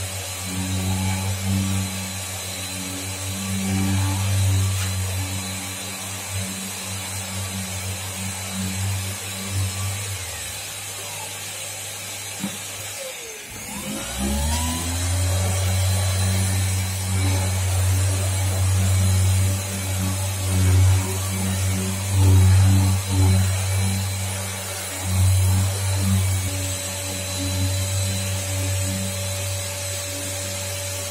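Yokiji KS-01-150-50 brushless electric random-orbital sander wet-sanding a car door panel with a 1000-grit Abralon pad, dust extraction switched off: a steady motor hum with the pad rubbing on the paint. It stops for about a second roughly 13 seconds in, then spins back up and runs on.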